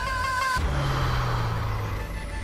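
A held musical note cuts off about half a second in, and a steady low rumbling hum with a hiss over it follows.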